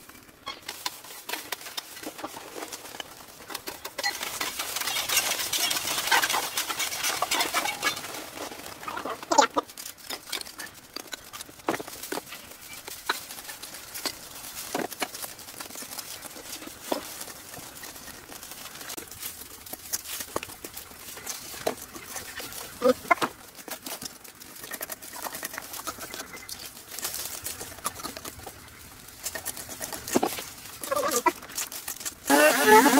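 Dry leaves, twigs and brush rustling and crackling as debris is dragged and vegetation is pulled up by hand, with a denser stretch of rustling a few seconds in and scattered snaps. Chickens clucking in the background.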